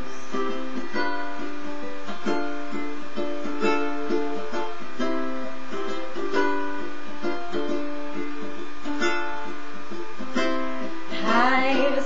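Lanikai ukulele strummed in a steady rhythm through a short instrumental break, the chords changing every second or so. A woman's singing voice comes back in near the end.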